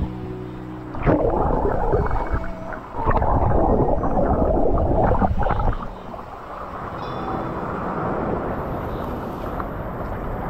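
Muffled churning of sea water around a GoPro dunked in breaking surf, its waterproof housing at and under the surface. Two loud surges of rushing water, the second running about three seconds, then a steadier, quieter wash.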